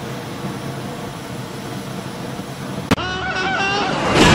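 Steady rushing fire sound effect of a cartoon flamethrower gun firing. It cuts off with a sharp click about three seconds in, and a short, wavering pitched sound follows.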